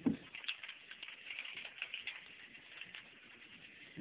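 Small plastic balls clicking and rattling as they roll down a toy marble run's plastic tracks: a faint, irregular stream of light ticks.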